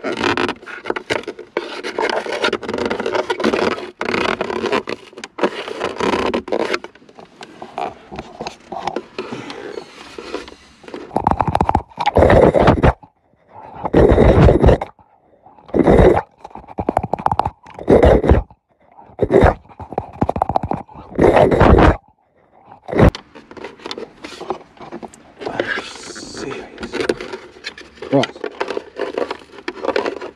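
Scraping and rubbing of plastic console trim being worked at by hand, then a string of about nine loud, short vocal outbursts between roughly 11 and 22 seconds in, followed by more quiet scraping.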